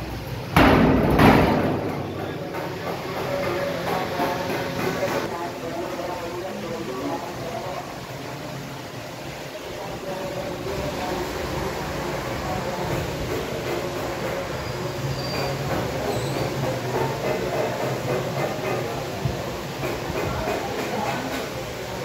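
Indistinct background voices and workshop noise over a steady low hum, with a loud bump about half a second in.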